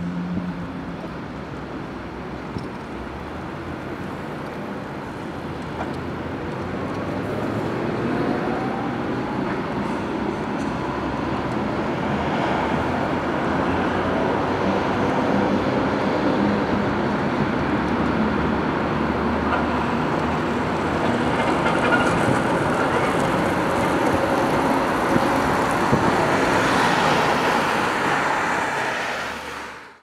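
City road traffic: a steady wash of passing cars, engine and tyre noise, growing louder after about eight seconds and fading out at the very end.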